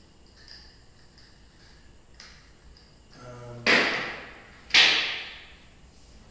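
Two sharp metal clanks about a second apart, each ringing out briefly, as steel parts or tools are handled on a steel bench.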